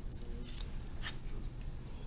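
Pen drawing a line on paper along a card used as a straightedge: a few short, faint scratching strokes.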